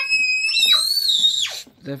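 A young child shrieking: one long, very high-pitched squeal that jumps higher about half a second in and breaks off about a second and a half in.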